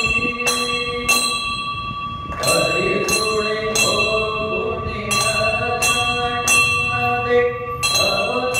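A temple bell struck over and over, about once or twice a second at an uneven pace, each strike ringing on into the next, as rung during an aarti.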